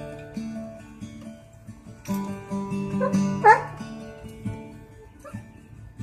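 Steel-string acoustic guitar played fingerstyle in a blues instrumental break, with picked treble notes over bass notes. About three seconds in, a dog gives one short whine that slides down in pitch.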